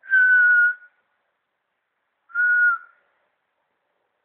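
Someone whistling two short, steady notes at the same pitch, the second about two seconds after the first.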